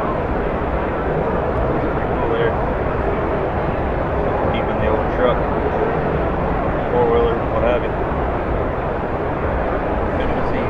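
Indistinct crowd chatter: many voices talking at once, none clear, over a steady background rumble.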